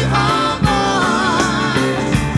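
Live blues-rock band playing, led by an electric slide guitar whose notes glide and waver in pitch, over bass and drums.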